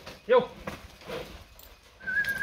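A cattle handler's short, loud herding shout, "ê!", to drive a Nelore heifer around the corral. A fainter call follows about a second in.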